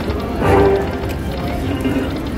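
Buffalo video slot machine's electronic game sounds as the reels spin and stop on a small win, with a louder pitched sound about half a second in, over continuous casino background noise.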